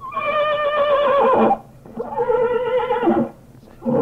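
A horse whinnying: two long, wavering whinnies of about a second and a half each, and a third starting near the end.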